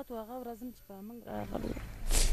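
A woman wailing and weeping in grief, her voice rising and falling in a string of broken, wavering cries.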